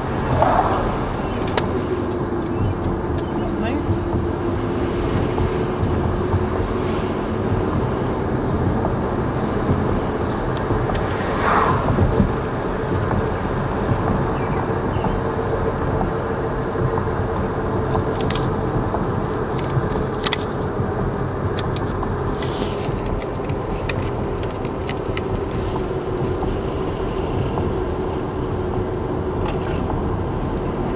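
Steady road and engine drone of a car being driven, heard from inside the cabin, with a constant hum. There are a couple of brief squeaks and some faint scattered clicks in the second half.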